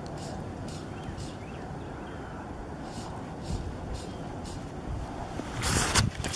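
Steady low wind rumble on the microphone, with a brief louder rush of noise near the end.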